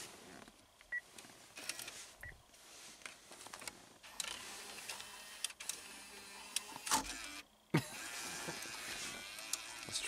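The in-dash six-disc CD changer of a Pontiac Aztek loading a disc: a small motor whirs and the mechanism clicks several times, with a sharper click about seven seconds in.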